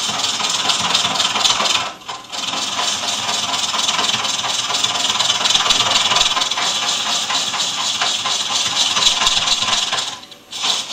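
Hollowing tool cutting the inside of a big leaf maple cone spinning on a large wood lathe: a steady, loud cutting noise of steel shearing wood. The noise breaks off briefly about two seconds in, then picks up again.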